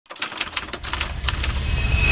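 A run of irregular sharp clicks over a low rumble that swells toward the end.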